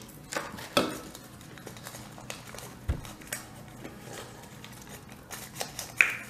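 Small handling noises at a meal table: napkins rustling and scattered light clicks and knocks as food and a plastic cup are handled, with one soft thump about halfway through.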